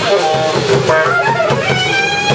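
Alto saxophone playing a shifting melodic line over a drum kit keeping a steady pulse: live small-group jazz.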